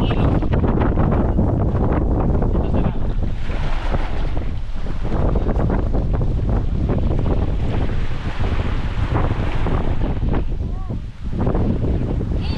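Strong wind buffeting the microphone over small surf washing up the sand and around the outrigger boat's hull, the wash swelling and easing as each wave comes in.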